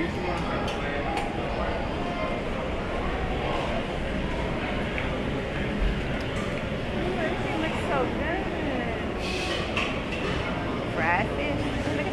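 Busy buffet-restaurant ambience: background chatter of diners and light clinks of serving utensils and dishes over a steady low rumble, with a brief hiss about three-quarters of the way in.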